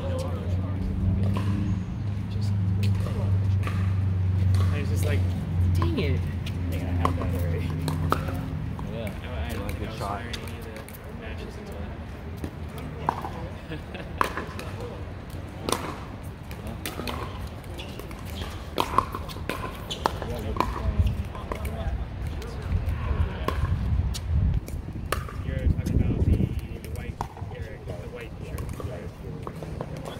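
Pickleball paddles striking a hard plastic ball: sharp pops at irregular intervals through a rally. A steady low hum runs under the first nine seconds or so.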